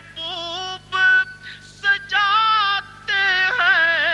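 A solo high-pitched voice singing held notes with a wide, wavering vibrato, in short phrases broken by brief pauses, as in devotional recitation; no instruments stand out.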